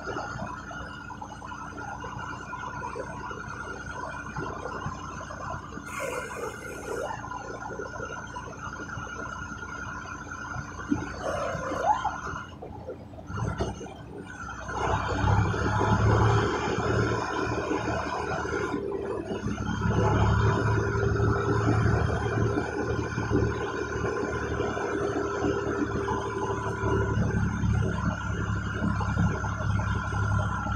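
Semi truck's diesel engine and cab noise heard from inside the cab as the truck rolls slowly, with a steady whine throughout. The engine rumble grows louder about halfway through.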